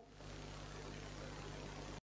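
Faint, steady low hum with a light hiss: room background noise during a pause in speech.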